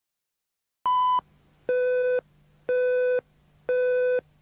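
Countdown beeps of a Russian TV tape-leader slate: one short higher beep about a second in, then three longer, lower beeps, one a second. A faint low hum runs between the beeps.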